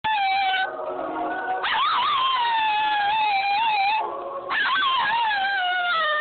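A Toy Fox Terrier howling in three long, wavering howls. The middle howl is the longest: it rises at first, then slowly falls. The last howl slides down in pitch.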